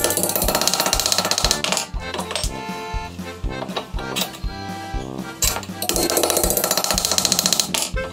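Background music with a steady beat and sustained instrumental notes.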